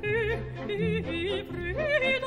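Operatic singing with a wide vibrato over a symphony orchestra's sustained low notes, the sung line moving through several notes and climbing near the end.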